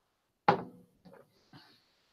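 A glass set down on a hard surface: one sharp knock with a short ring, followed by two much softer knocks.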